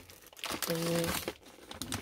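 Plastic snack bag crinkling as it is picked up and handled.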